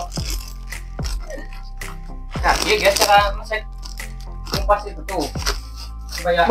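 Crinkling and tearing of a plastic snack packet being twisted and ripped open by hand, in short sharp crackles, over steady background music.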